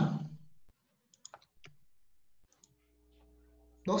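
A few faint, sharp clicks of a computer keyboard and mouse as numbers are typed in, spread over a couple of seconds, followed by a faint steady electrical hum.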